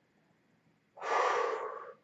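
A man's audible breath, about a second long, beginning halfway in.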